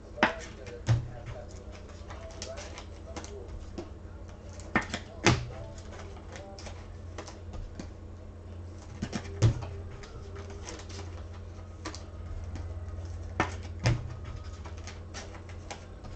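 Trading cards and card packs handled on a tabletop: short, sharp clicks and knocks, often in pairs a fraction of a second apart, every few seconds over a steady low hum.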